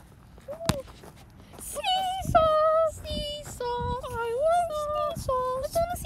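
A high-pitched voice singing a short tune in held notes, starting about two seconds in, after a single sharp click.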